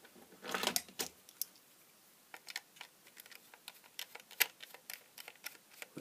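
Small plastic plug casing being handled, then a scattered run of small clicks and taps as a precision screwdriver works the screw in its back to open it, with one sharper click about four and a half seconds in.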